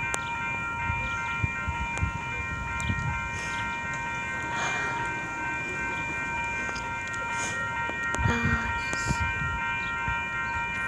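Train air horn of an approaching Amtrak train sounding one long steady multi-note chord that holds without a break. Brief swells of road traffic noise pass under it twice.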